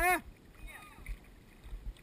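Water lapping and sloshing around a camera held at the surface by a swimmer, with soft low thumps and faint distant voices. A short spoken 'huh?' comes at the very start.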